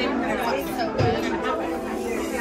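Restaurant dining-room hubbub: many indistinct voices of diners talking at once, with a brief soft knock about halfway through.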